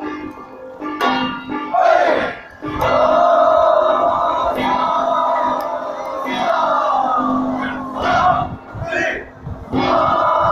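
A group of men's voices calling out festival shouts in unison, in a few long drawn-out calls, the longest about three seconds.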